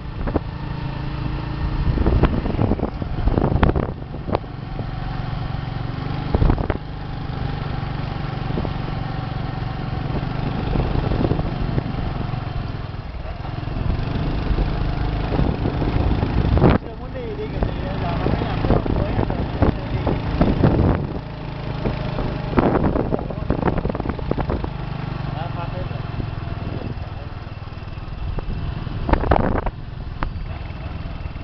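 Motorcycle engine running steadily while riding, with wind buffeting the microphone in rough gusts.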